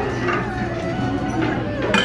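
Music and voices talking in the background over a steady low hum, with one sharp click near the end.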